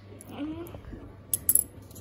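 A few sharp clicks or taps, about a second and a half in, from a card being handled on a wooden tabletop, with a faint murmured voice before them.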